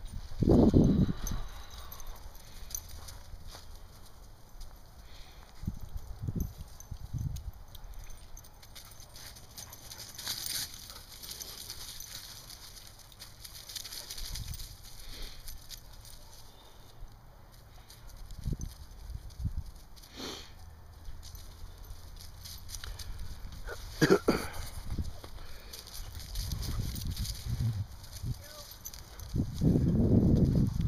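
Belgian Sheepdogs at rough play, making scattered low scuffling and grumbling sounds as they chase and wrestle. There is a single sharp knock about twenty seconds in, and a short laugh and a spoken "yep" a few seconds later.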